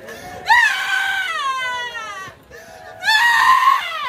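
A mourner wailing in grief: two long, high-pitched cries, each rising briefly and then falling away in pitch, the first about half a second in and the second near the end.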